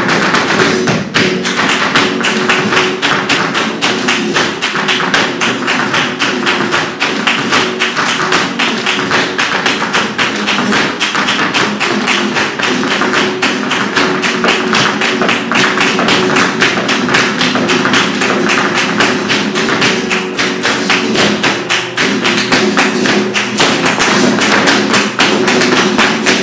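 Flamenco dancer's fast footwork (zapateado) drumming out rapid, steady heel and toe strikes, together with palmas hand clapping, over flamenco guitar.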